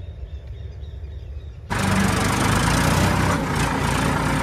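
Tractor engine running, first as a low steady hum from some way off. About halfway through it gives way abruptly to the same kind of engine heard up close from the driver's seat, much louder and fuller.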